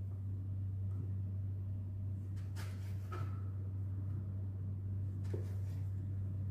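Steady low hum with a few light knocks and clicks, about halfway through and again near the end, from a hot dog and a kitchen knife being handled on a plastic cutting board.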